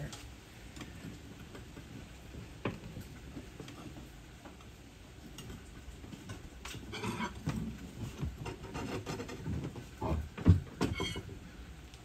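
Steel pry bar, wooden pallet and black iron pipe knocking and scraping on concrete as a heavily loaded pallet is levered up to set it onto the pipe as a roller. There are scattered knocks, with a busier stretch of scraping and knocking and a loud heavy thump about ten and a half seconds in.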